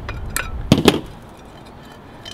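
Pliers working the end of a bonsai pot's screen-holding wire, pinching it off: a few sharp metallic clicks in the first second, then quiet handling.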